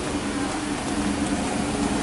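A steady low machine hum holding two even tones, over a constant rushing noise.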